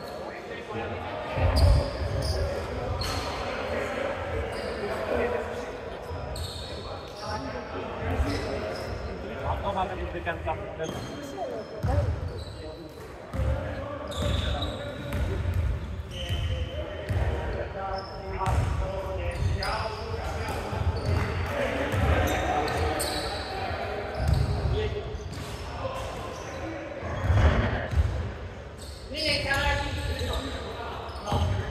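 A basketball dribbled on a hardwood gym floor, with irregular low bounces, mixed with players' voices calling out, all echoing in a large hall.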